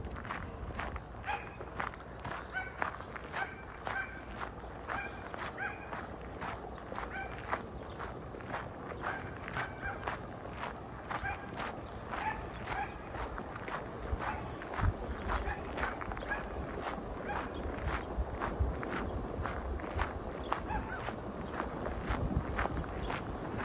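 Footsteps crunching on a gravel path at a steady walking pace, about two steps a second. Rushing water from a churning drop in the canal grows louder toward the end.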